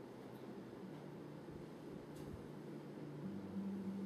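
A soloed bass track played back faintly through studio speakers: a few long, low held notes, the last one higher, over a steady hiss.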